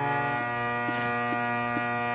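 Harmonium playing an instrumental passage, holding a sustained chord over a low drone note, with a light tick recurring about twice a second.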